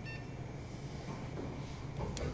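A short electronic beep, a fraction of a second long, right at the start, then a steady low hum.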